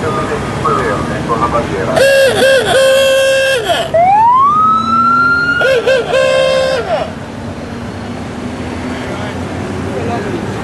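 A loud siren sounding from a vehicle in a parade of Honda Gold Wing touring motorcycles. A horn-like tone that dips twice comes first, about two seconds in, then a wail rises and holds, then the dipping tone returns and stops about seven seconds in. The passing motorcycles run steadily beneath it.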